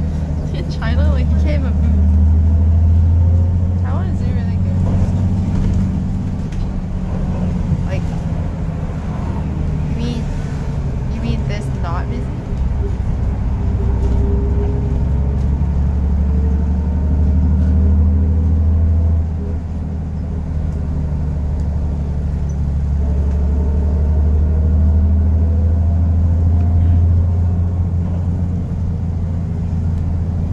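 Engine and road noise inside a moving city bus: a steady low rumble that swells and eases several times as the bus speeds up and slows, with a faint rising whine at times.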